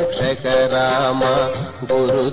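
Background Indian devotional music: a voice sings a wavering, ornamented melody over a steady held drone note.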